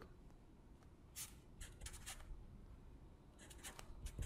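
Felt-tip marker writing on paper: faint, short scratchy strokes in small groups about a second in, around two seconds, and near the end.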